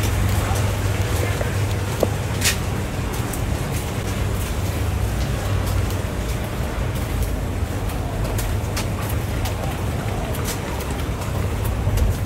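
Steady low outdoor rumble with an even background hiss, broken by a few sharp clicks, the loudest about two and a half seconds in.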